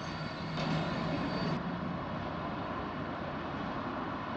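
Class 66 diesel-electric locomotive hauling a freight train past, its engine giving a steady low drone over the rolling rumble of the wagons. About a second and a half in the sound changes abruptly to a duller, steady rumble of a distant freight train.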